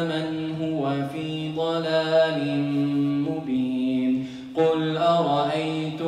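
A man's voice chanting Qur'an recitation in a melodic style, heard through a microphone. He holds long, ornamented notes that step down in pitch over the first four seconds, breaks off briefly about four and a half seconds in, then starts the next phrase.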